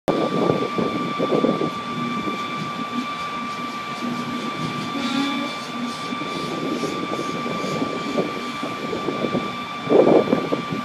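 Steady high-pitched whine of machinery running at a jacked-up Airbus A380, with irregular gusts of wind buffeting the microphone.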